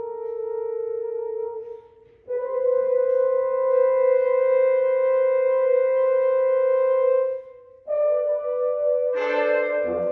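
Brass octet playing long held chords. The sound drops away briefly about two seconds in and again near eight seconds before the next held chord, and more instruments enter near the end.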